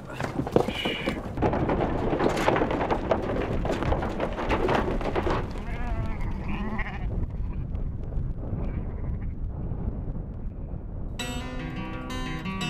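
A flock of sheep bleating over a dense, noisy din, which dies down after about seven seconds. Acoustic guitar music starts near the end.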